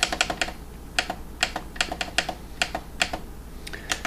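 A quick run of clicks, about three to four a second, as the buttons on the top bar of a Mira SBF415 digital body-fat scale are pressed over and over to step up the height setting.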